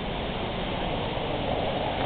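Minnehaha Falls and its creek running high and fast after rain: a steady rushing of water.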